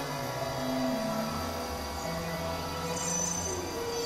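Experimental synthesizer drone music from a Novation Supernova II and Korg microKorg XL: long held tones over a low sustained drone, the upper notes shifting every half second to a second, with faint high tones coming in near the end.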